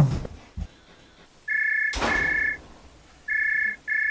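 A phone ringing: a steady two-tone electronic ring in short bursts, starting about one and a half seconds in and repeating twice near the end. A few soft knocks come at the start, and a short noisy burst falls in the middle of the first ring.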